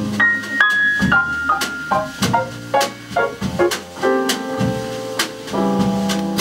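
Live jazz trio of piano, upright bass and drum kit playing an instrumental passage, with a piano line stepping down in pitch in the first second or so over bass notes and drum hits.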